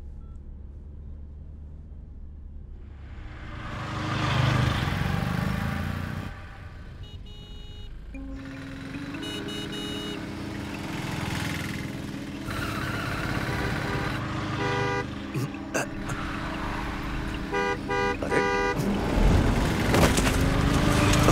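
A low, steady car-cabin hum from a car being driven, swelling around four to six seconds in. It then gives way to long held tones, with bursts of quickly repeating short beeping tones about ten seconds in and again near the end, where it grows louder.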